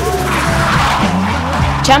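A Nissan S15 drift car sliding sideways, with tyre squeal and engine noise, mixed over background music.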